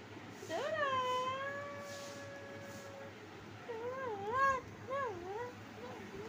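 Golden retriever whining: one long high whine that rises and then holds for a couple of seconds, followed by a few wavering whines that go up and down.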